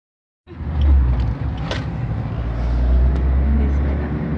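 Car's engine and road noise as a steady low drone heard inside the cabin while driving, starting about half a second in, with a sharp click about a second and a half in.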